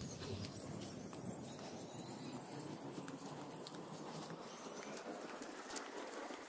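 Faint footsteps of someone walking over grass and dry leaf litter, soft irregular crunches and taps over a quiet outdoor background.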